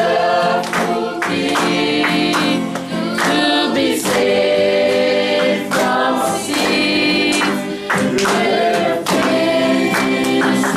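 A congregation singing a worship song together, many voices held on long notes.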